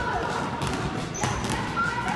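Several basketballs bouncing on a sports hall floor, a scatter of quick irregular thuds.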